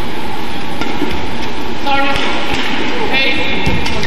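Badminton rally: rackets striking the shuttlecock with sharp ticks, and court shoes squeaking on the court mat twice, about two and three seconds in, over steady arena crowd chatter.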